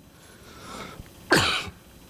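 A man coughs once into his fist, a single short cough about a second and a half in.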